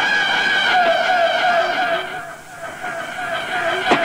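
Synthesizer tones with a slowly wavering, warbling pitch. They thin out and drop in level about halfway through, swell back, and end in a sharp click just before a new, steadier tone sets in.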